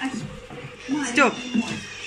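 A domestic cat meowing, with its clearest call about a second in.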